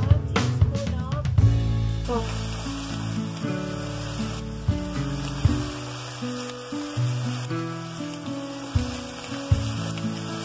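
Background music of held notes stepping from pitch to pitch, with ground beef sizzling in a frying pan under it as an even hiss.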